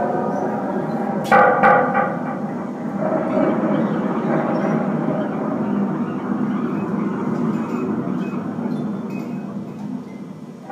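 Experimental electroacoustic improvisation: a dense, rumbling noise texture with a few held pitches. A sudden sharp, pitched hit comes about a second in and rings briefly.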